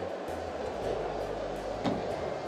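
Background music over steady hall noise with a low hum. One sharp click near the end comes from the red plastic tool case being handled.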